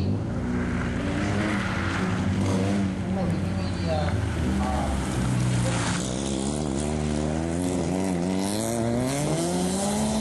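Rally car engine at high revs, its pitch dropping and climbing with throttle and gear changes. Over the last few seconds the pitch climbs steadily as the car accelerates hard.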